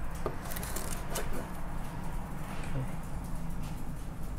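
Kitchen knife working an iguana carcass on a wooden cutting board: a few faint knocks and scrapes over a steady low hum.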